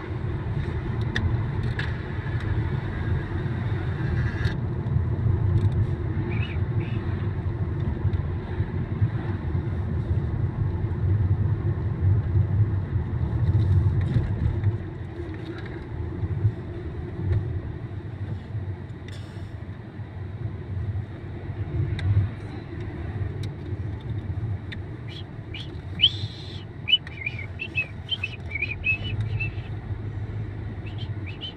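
Inside a moving car's cabin: engine and tyre road noise as a steady low rumble, easing a little about halfway. Near the end, a run of short high chirps.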